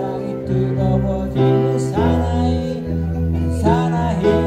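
A man singing while playing an electric keyboard: sustained chords over a steady bass note, his voice sliding in pitch about two seconds in and again near the end.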